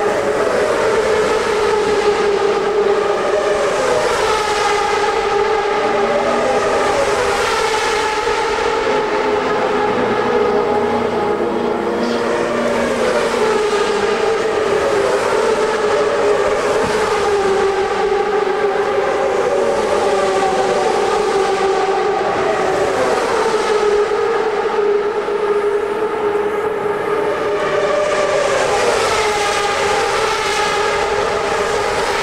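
CART Champ Car turbocharged V8 engines at high revs, a steady high-pitched note with cars passing one after another every few seconds, each pitch falling as it goes by.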